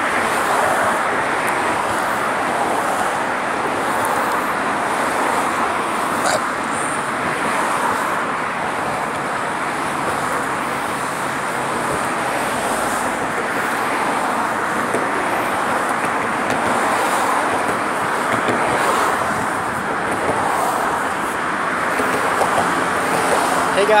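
Steady road traffic noise from cars passing on the bridge roadway.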